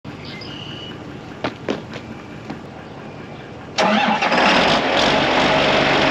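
John Deere tractor's diesel engine starting nearly four seconds in, then running steadily on a cold start to warm up. A few faint clicks come before it.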